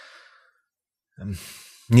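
A man drawing a soft breath in a pause between phrases of speech. A short voiced sound follows about a second later, and he resumes speaking near the end.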